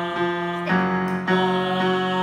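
Small group of voices, men and women, holding a loud sustained long tone on F in chest voice, a vocal warm-up exercise, over an electric piano striking the chord about twice a second. The held note breaks briefly and starts afresh about a second in.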